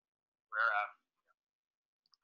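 A single short voice sound, under half a second, about half a second in, thin and narrow in tone; otherwise silence.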